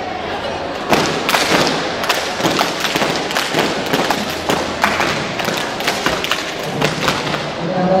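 A group of scouts clapping in unison in a cheer routine, with thumps: a run of sharp, irregular claps and knocks that starts about a second in and stops about a second before the end.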